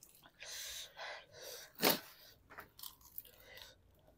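Close-miked chewing and mouth noises of people eating noodles, with one short, sharp loud burst about two seconds in and a few small clicks after it.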